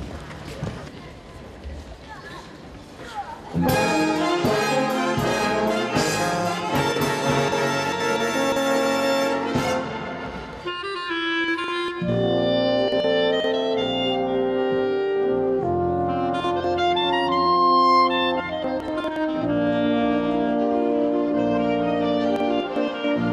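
A wind band strikes up the opening of a clarinet concerto with a sudden loud full-band entry about three and a half seconds in. From about twelve seconds a solo clarinet plays held and moving notes over the band's accompaniment.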